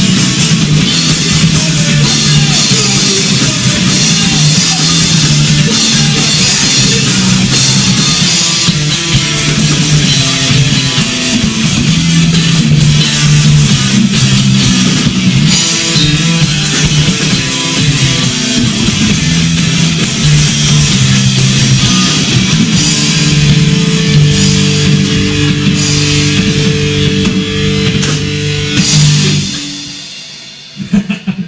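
A punk rock band playing live in a small room: distorted electric guitars over a full drum kit. Near the end a final chord is held and rings out, then fades.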